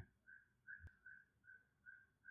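Near silence with faint, short, high chirps at one steady pitch, about four a second, and a single faint click a little under a second in.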